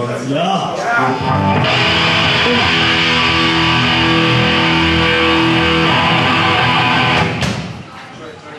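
Loud electric guitar through an amplifier, a chord held and left ringing for about five seconds, then cut off.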